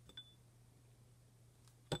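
Quiet room tone with a faint steady hum, and a light click with a brief high ring a moment in, from small craft pieces being handled on the desk.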